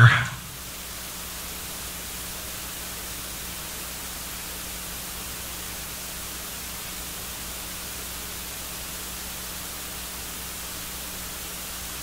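Steady, even hiss with a faint low hum underneath: the noise floor of the sound system or recording, with no other sound.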